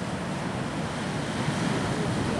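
Sea waves breaking and washing over rocks in a steady wash of surf.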